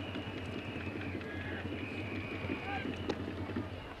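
Ballpark crowd noise from the stands, with long high held tones from the cheering section over it. There is a single sharp pop a little past three seconds in as the pitch reaches the catcher's mitt.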